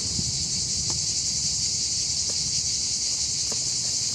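Steady high chorus of insects chirring without a break, with a few faint clicks from a quadcopter's battery plug being handled and connected.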